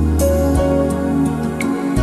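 Instrumental background music with sustained bass notes and held melodic tones that change every second or so.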